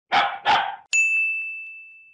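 A dog barking twice, then a bright chime that rings on and fades: a brand's sound logo over its end card.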